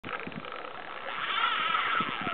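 Fishing reel drag whining steadily as a big hooked redfish runs and pulls line off the reel, growing louder toward the end.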